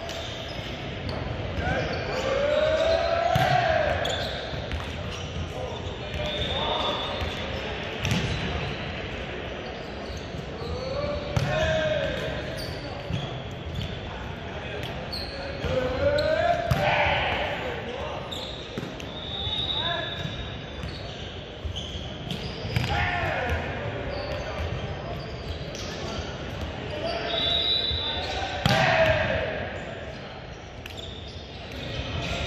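A volleyball rally in a large, echoing gym: players' shouted calls rising and falling every few seconds, with sharp knocks of the ball being hit and bouncing on the hardwood court.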